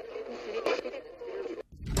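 A voice coming over a noisy radio line, stammering "they're... they're", with a steady hum under it.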